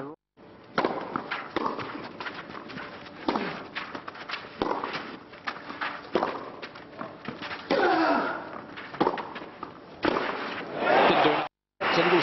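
Tennis stadium crowd between points: scattered voices and calls from the stands, with many short sharp taps and clicks throughout. The sound drops out completely for a moment at the start and again near the end.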